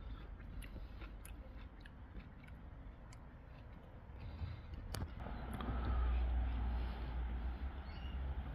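Faint small clicks and smacks of a person biting and sucking at a peeled lemon drop mangosteen (Garcinia intermedia) fruit, then a sharp click about five seconds in followed by a louder low rumble of handling noise.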